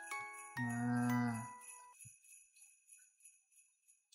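Background Christmas music with jingle bells and bell-like chime notes. About half a second in, a low held note lasting about a second stands out, and then the music fades out.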